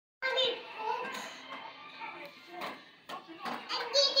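A toddler talking in a high voice in short stretches, louder near the end.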